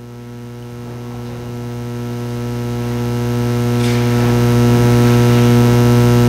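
Organ holding one steady low chord and swelling gradually louder, leading into the hymn.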